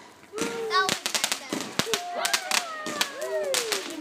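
Fireworks going off: many sharp crackling pops in quick, irregular succession, starting about a second in.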